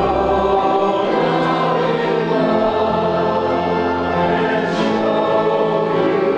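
Church congregation singing a hymn together, holding long, slow notes.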